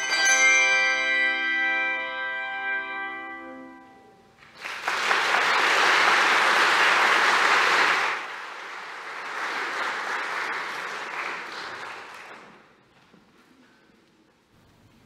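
The final chord of a handbell choir rings and dies away over about four seconds. Then the audience applauds, loudest for about three seconds and softer after that, stopping about twelve seconds in.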